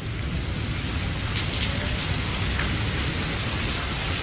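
Steady rain recording, an even hiss over a low rumble with a few faint drop-like clicks, used as the intro sample of a vaporwave track.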